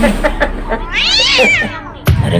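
A cat meowing once: a single drawn-out call of about a second that rises and then falls in pitch, after a few faint clicks near the start.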